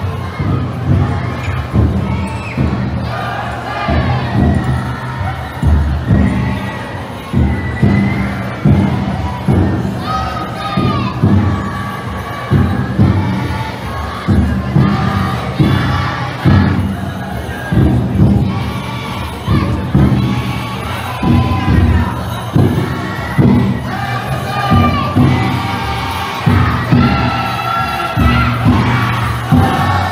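Taiko drum inside a futon daiko float, beaten in a steady pulse of about one stroke a second, under the shouted chant of its bearers and the voices of the crowd.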